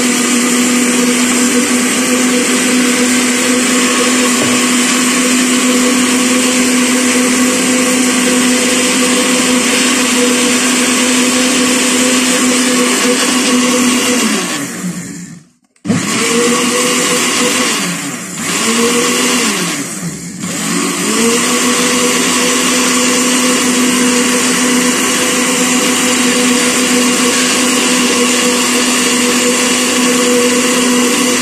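Electric countertop blender beating liquid cake batter of eggs, sugar, milk and oil, its motor running at a steady high speed. About halfway through it winds down and stops for a moment, then spins back up. It slows briefly twice more, then runs steadily again.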